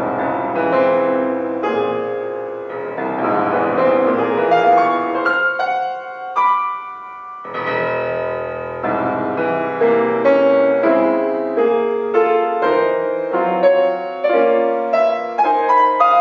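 Solo grand piano playing modern classical music with no regular beat: ringing chords, a sparser passage of single higher notes about six seconds in, then a strong low chord and quicker groups of notes.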